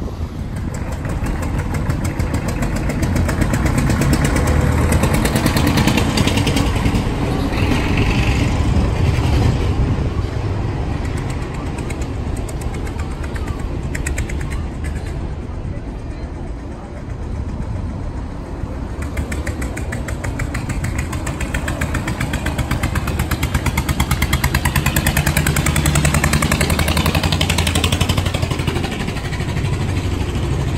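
Motor vehicles driving slowly past over cobblestones, their engines rumbling steadily and swelling louder twice, with people talking in the background.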